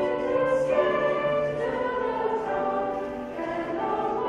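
A mixed choir of young voices singing in harmony, holding sustained notes that move to new chords every second or so.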